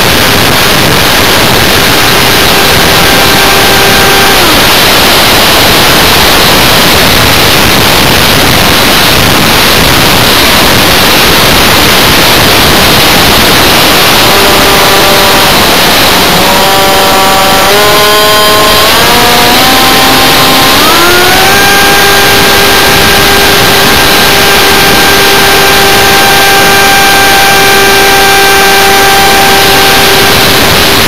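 Onboard sound of a Funjet electric model jet in flight: loud rushing hiss from the airflow over the model, with the electric motor and propeller whine on top. The whine drops away about four seconds in as the motor is throttled back, comes back in stepped changes of pitch from about halfway, and from about 21 s holds steady at a higher pitch.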